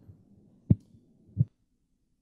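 Two short, dull thumps about two-thirds of a second apart, close on the microphone.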